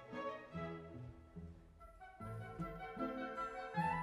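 Symphony orchestra playing classical music, the string section leading in short, separate notes. The music falls away briefly about halfway through, then picks up again.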